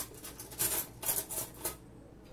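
Utensils working in a bowl of instant noodles as they are stirred with their sauce: a quick, irregular run of short scraping and clicking strokes, about five or six in two seconds.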